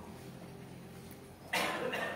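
A person coughs once, suddenly and loudly, about one and a half seconds in, over a faint steady room hum.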